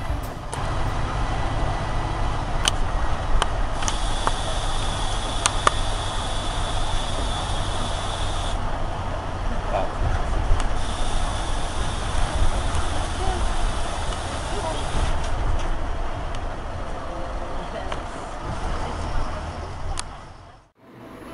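City bus interior, with the engine and road noise running as a steady low rumble under a hiss. A thin high whine comes in about four seconds in and again around ten seconds, and there are a few brief clicks. The sound is harsh and hissy, as recorded by a cheap built-in camcorder microphone that captures audio terribly.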